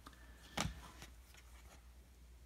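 Faint handling of chrome baseball trading cards: one short scrape of a card slid across the stack about half a second in, then a few faint ticks, over a low steady hum.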